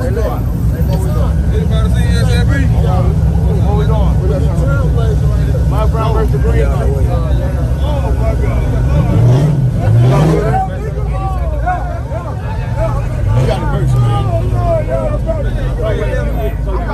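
Crowd chatter over a steady low car-engine rumble, with the engine revved up and back down twice, about nine seconds in and again about four seconds later.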